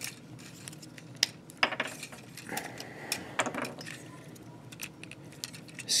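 Hard plastic parts of a Transformers Generations Voyager Class Whirl action figure clicking and clacking as hands pull off its accessories and start to transform it: an irregular scatter of light clicks, a few louder ones among them.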